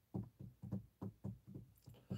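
Faint, quick run of soft low taps or knocks, about four or five a second, somewhat irregular.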